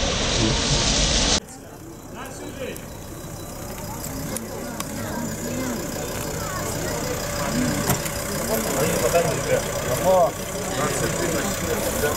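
A loud steady rushing noise cuts off suddenly about a second in. Then a vehicle engine runs under the chatter of several people's voices, growing louder towards the end.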